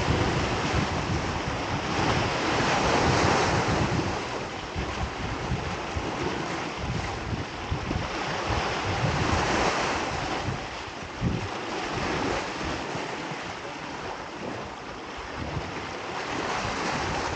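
Small waves washing in and draining back over shoreline rocks, swelling about three seconds in and again near ten seconds, with wind buffeting the microphone.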